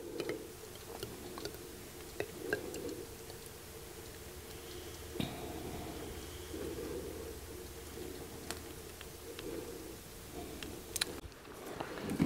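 Faint sound of molten beeswax being poured slowly from a small metal pouring pitcher into a candle mold, with a few soft ticks over a steady low hum.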